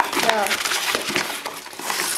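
Packing paper crumpling and rustling as it is pulled out of a cardboard shipping box, in irregular crackly handfuls.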